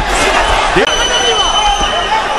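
Boxing arena crowd yelling and cheering during a flurry of punches, with a steady high whistle-like tone held for about a second in the middle.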